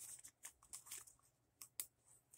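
Faint rustling of a clear plastic cash envelope in a binder being handled and pressed shut, with a few light clicks, two of them close together near the end.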